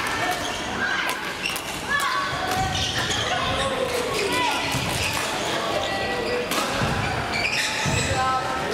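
Badminton rallies in a large, echoing sports hall: sharp racket strikes on shuttlecocks and footfalls on the wooden court floor, over the chatter and calls of many players.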